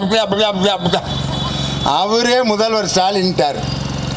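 A man speaking animatedly into a microphone over a public-address system, in two phrases with a short break about a second in. A steady low hum runs beneath the voice.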